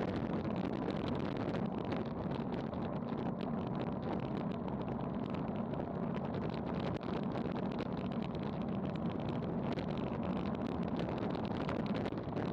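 Steady rush of wind over an action camera's microphone on a road bike descending at about 30 mph.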